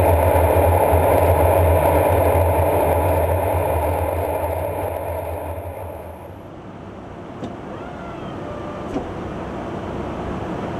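Steady, loud in-flight drone of engines and rushing air inside an aerial refuelling tanker's boom compartment. It fades to a quieter, lower hum about six seconds in, with two faint clicks near the end.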